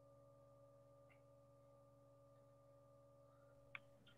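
Near silence: a faint steady hum, with one small click near the end.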